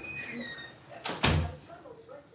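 A house door shutting with a single thud a little over a second in, just after a short, high, falling squeak.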